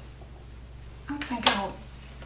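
A spoon clinks sharply against a bowl once, about a second and a half in, as pinto beans are spooned out of it.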